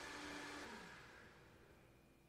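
Near silence: faint room hiss and hum, fading lower about a second in.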